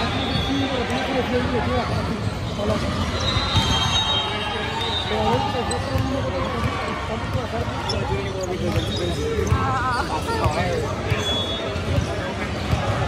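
Gym ambience: volleyballs bouncing and being struck on a hardwood floor, scattered all through, over the chatter of many voices and a few short high squeaks.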